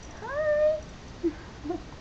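Domestic tabby-and-white cat meowing once: a single short call that rises steeply in pitch, then holds level.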